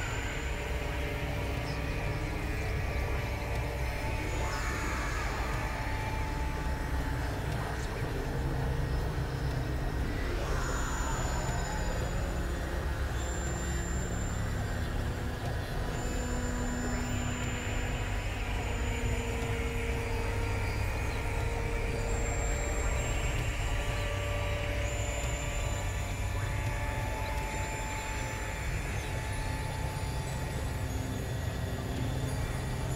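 Experimental electronic noise-drone music: a dense rumbling low end under short held synthesizer tones that come and go at shifting pitches. A falling sweep comes about ten seconds in.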